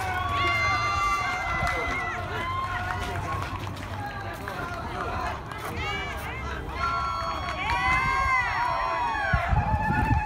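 Several voices yelling and cheering at once, long drawn-out high calls overlapping, loudest about a second in and again around eight seconds in. A few low bumps near the end.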